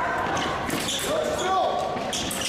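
Sabre fencers' footwork on the piste: shoes squeaking and thudding as they advance and close in, with voices in the hall.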